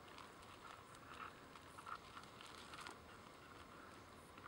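Faint, scattered ticks and rustles of gravel shifting under a desert kingsnake and a Mojave rattlesnake as they writhe over the stones, over a low hiss.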